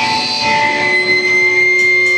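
Live rock band in a break without drums: electric guitars ringing out on sustained notes, with one high note held steady from about a quarter of the way in.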